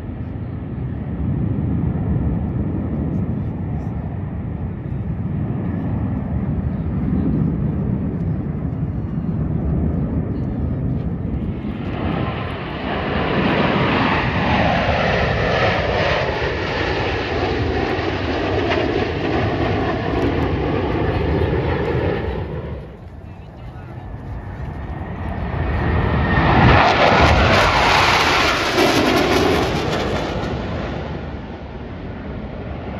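Blue Angels F/A-18 jets flying past in formation. A distant jet rumble gives way, about twelve seconds in, to a loud pass of jet engine noise with a swooshing sweep in pitch as the formation goes over. It drops away about ten seconds later, and a second loud jet pass builds near the end.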